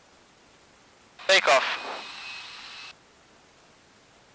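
A short, loud burst of a man's voice over the cockpit radio about a second in, clipped and unclear. It trails into a band of hiss with a faint steady high tone that cuts off suddenly about three seconds in, like a radio transmission ending. The rest is low steady hiss on the headset line.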